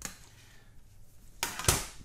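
Handling noise from a plastic printer disc tray and a printed DVD: a light click, then near the end a short rustling scrape with a sharp knock as the disc is taken from the tray.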